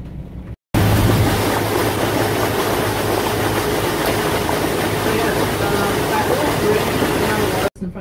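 Steady rush of wind and motor noise from a moving tour boat on the lake, with a low engine hum underneath. It starts abruptly about a second in and cuts off just before the end.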